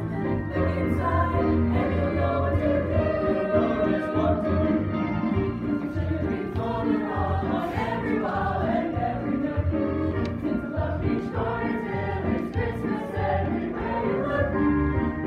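High school choir ensemble singing an upbeat Christmas song in harmony, over a low bass line that moves note by note.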